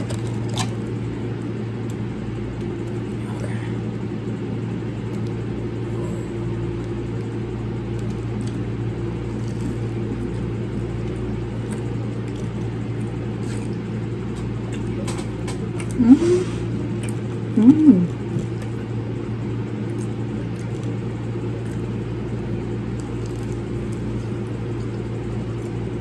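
Steady motor hum of a room fan running, with two short murmured "mm" sounds from the eater about two-thirds of the way through.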